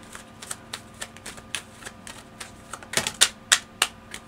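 Tarot cards being shuffled by hand: a run of light, irregular clicks and snaps of the cards, with a few sharper ones about three seconds in.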